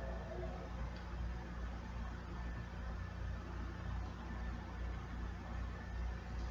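Room tone: a steady low electrical hum with faint hiss, and no distinct sounds.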